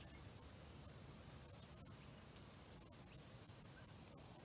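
Near silence: faint outdoor ambience, with two brief, faint high-pitched tones, one about a second in and one past the three-second mark.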